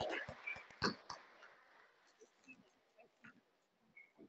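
Applause thinning out to a few scattered claps in the first second or so, then only faint small noises in the room.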